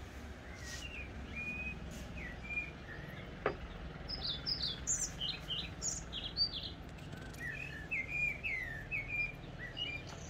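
Small songbirds chirping and whistling in short, quick phrases, several calls overlapping, over a faint steady low rumble of outdoor background. One sharp click about three and a half seconds in.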